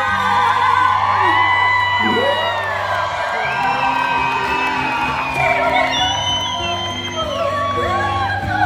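Live concert music with a band playing a stepping bass line, while audience members whoop and cheer over it.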